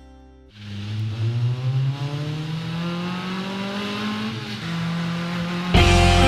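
Car engine revving with its pitch climbing steadily over about five seconds, as a sound effect in a recorded song's intro. A loud full band comes in near the end.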